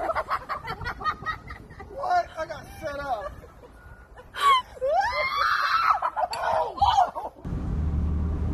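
Excited voices shouting and laughing, with a loud rising scream about halfway through. Near the end the sound switches suddenly to the steady low rumble of road noise inside a moving car.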